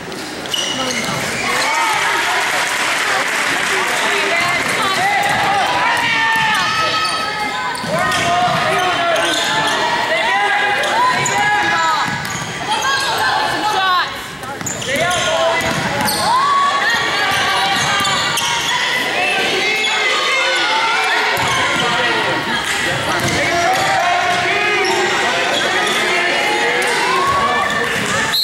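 Basketball game in a gym: many voices from the crowd and players, with the ball bouncing on the hardwood floor, all echoing in the hall.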